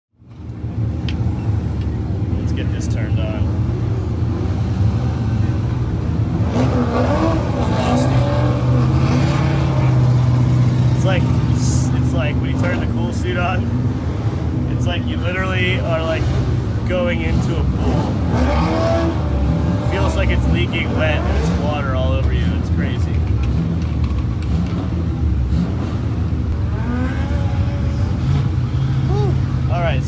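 A race car's engine running at idle, a steady low rumble heard from inside the roll-caged cockpit, with a man talking over it.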